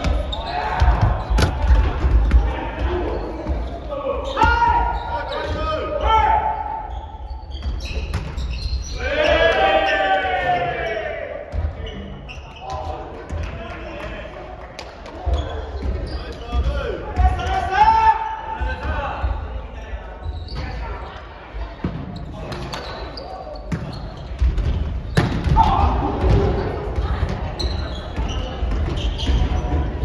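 Volleyball rally in a large gym: a string of ball hits and bounces on the wooden floor, ringing in the hall, with players calling and shouting to each other several times.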